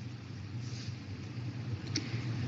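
Faint, steady low hum with a light hiss: background noise on an open microphone.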